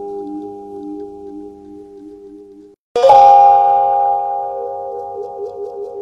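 A singing bowl rings with a wavering, pulsing tone that fades and breaks off about three seconds in. It is then struck again, and the new ring sets in sharply and slowly dies away, still pulsing.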